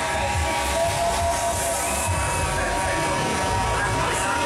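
Loud fairground music with a steady bass beat, playing over the hubbub of a crowd.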